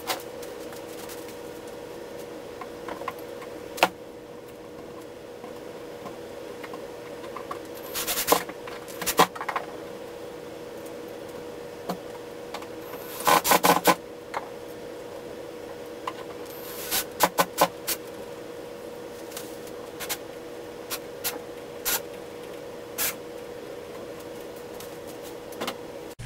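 Scattered clicks, knocks and short rattling bursts of a wooden cabinet door and its metal hinges being handled and fitted onto the cabinet frame, over a steady hum.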